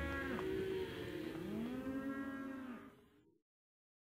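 Cattle mooing: several long, drawn-out calls that overlap one another, fading out to silence about three seconds in.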